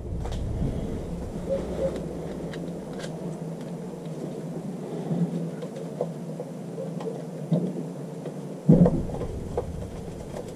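Faint handling sounds of a flathead screwdriver driving the top vent screw back into an outboard's lower-unit gearcase: light scrapes and ticks, with one louder knock near the end, over a steady low hum.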